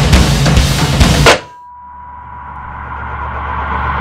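Loud, heavy drum-driven trailer music that stops abruptly on a hard impact hit about a second in. It gives way to a low drone with a thin, steady high tone and a swell that grows gradually louder.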